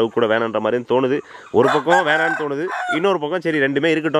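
A rooster crows once, a single long call that swoops up and holds for about a second and a half, starting about one and a half seconds in.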